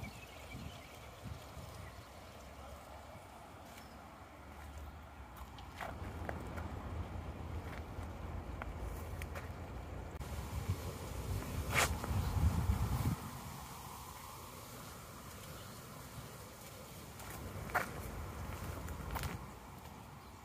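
Wind rumbling on the microphone outdoors, heavier from about six to thirteen seconds in, with footsteps and a few sharp clicks as the camera is carried along a path.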